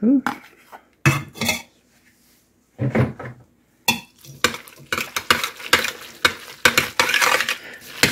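A metal spoon stirring noodles, peas and tuna in a stainless steel pot, scraping and clinking against the pot's sides. A few scattered knocks come early, then a dense run of quick clinks and scrapes from about halfway through.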